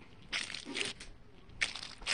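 A mesh squishy stress ball squeezed in the hand twice, the first squeeze longer, giving a faint crinkly squish about half a second in and again near the end.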